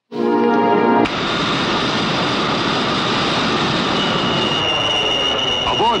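A brief held musical chord, then Boeing 707 jet engines running with a steady, dense roar; a steady high whine joins in about four seconds in.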